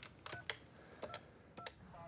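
Desk telephone keypad dialing 911: three short touch-tone beeps, each with the click of a button press.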